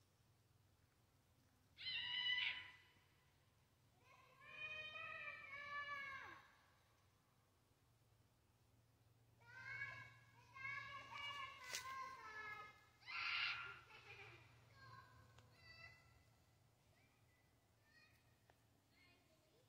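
Several drawn-out, pitched animal cries in a row, some held for a second or two and falling at the end, over a faint steady low hum of the vehicle driving.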